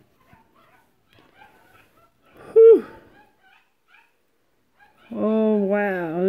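Faint clicks and rustling as a plastic magnetic card holder is pried open, then one short, high yelp that drops in pitch, about two and a half seconds in.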